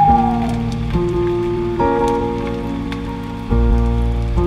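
Slow, relaxing piano music with a low bass, the chords changing about once a second, over a soft steady crackle like light rain. A short falling tone sounds right at the start.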